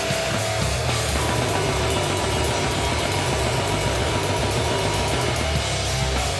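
Crustgrind / thrash punk played by a full band: heavily distorted electric guitars and bass over fast drumming with dense cymbal hits. It is a loud, steady wall of sound.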